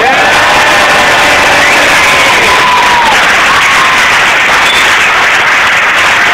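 An audience applauding loudly, with cheers and whoops over the clapping. It breaks out suddenly after a brief hush and holds steady.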